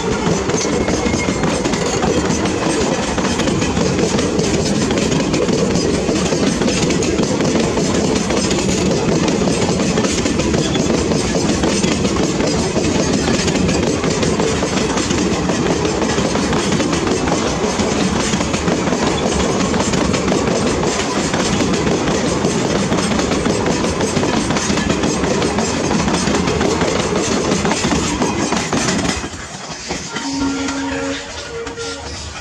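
Indian Railways passenger coaches passing close by, their wheels giving a loud, steady rumble on the rails, which drops off suddenly just before the end.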